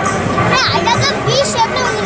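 Festival crowd with children's high shouts and chatter over music.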